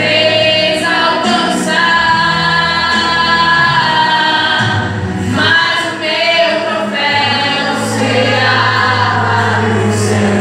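A woman singing a gospel song into a microphone, her voice amplified through a PA, holding long notes over steady low instrumental accompaniment, with a guitar played beside her.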